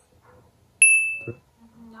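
A single bright ding, an edited-in chime sound effect, sounds about a second in and fades away over half a second, marking points scored.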